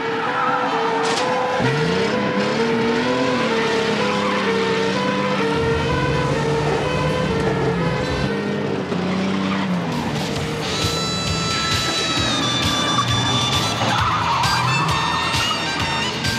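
Car-chase soundtrack: car engines revving and running hard, with tyres squealing in long high-pitched screeches through the second half.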